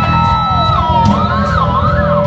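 Live band playing, with drums, cymbals and bass under a held lead note that bends down and then wavers up and down in pitch before settling on a steady note.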